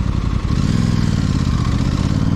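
Parallel-twin motorcycle engine running at low speed, its note settling into a steady, even tone about half a second in.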